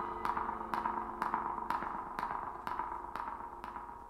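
Quiet jazz ensemble music: a steady pulse of short, ringing struck notes about twice a second over held tones, slowly fading away.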